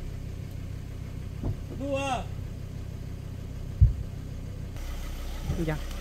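Car running, a steady low rumble heard from inside the cabin, with a single sharp low thump just before four seconds in.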